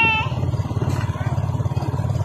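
Small motorcycle engine running at a steady cruising pace, its exhaust pulsing evenly.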